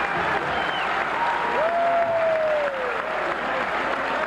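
Audience applauding steadily, with one voice calling out over the clapping in a long note that falls in pitch about halfway through.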